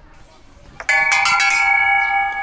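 A bell-like chime: a quick run of bright strikes a little under a second in, then several clear ringing tones held steady.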